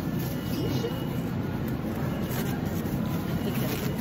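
Steady low hum of a supermarket's produce section, with faint voices and a few brief crinkles of a thin plastic produce bag being handled.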